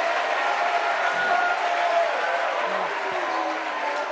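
Studio audience applauding after a punchline, easing off slightly toward the end, with a few faint voices mixed in.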